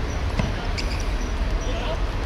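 A football kicked on artificial turf: one dull thud about half a second in, over a steady low rumble.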